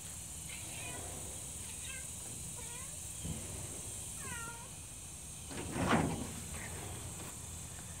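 Bengal cat giving several short, curving chirp-like meows, the clearest just past four seconds in. A louder noisy burst, about half a second long, comes about six seconds in.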